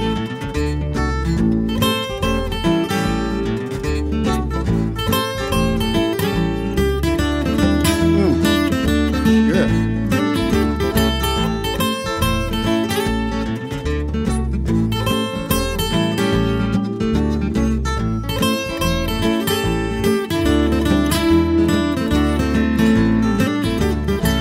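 Acoustic guitar instrumental break in a country-blues song: a picked lead of quick single notes over a bass line that moves in steps.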